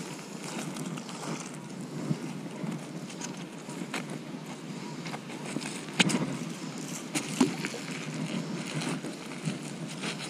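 Rubber-gloved hands handling a mud-covered clump of metal scrap stuck to a fishing magnet, with scattered sharp clicks and knocks, the loudest about six seconds in and another about a second later, over a steady low background noise.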